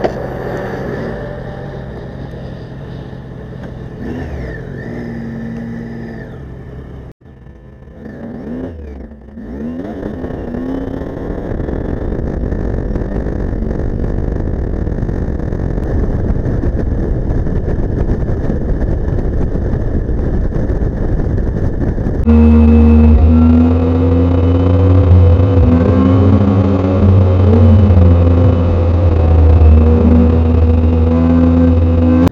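Motorcycle riding sound picked up by a helmet camera. The engine runs steadily at first, then wind and road noise build as the bike gets up to motorway speed. About two-thirds of the way in, the sound cuts abruptly to a louder, deeper engine drone with shifting pitches.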